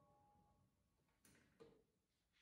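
Near silence: faint lingering piano tones fade out within the first half-second, then room tone with a couple of faint brief noises.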